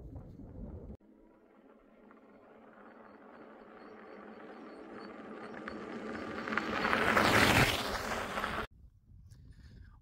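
A road vehicle approaching and passing, its tyre and engine noise building slowly to a peak about seven seconds in, then cut off suddenly.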